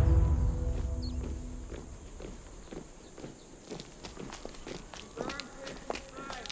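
Sustained film-score chords fade out over the first two seconds, leaving faint, regular footsteps on a dirt ground.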